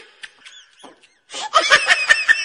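Laughter: a few faint sounds, then a loud burst of laughter about one and a half seconds in, added over the footage as a comedy sound effect.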